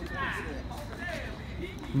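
Faint voices talking over a low, steady background rumble.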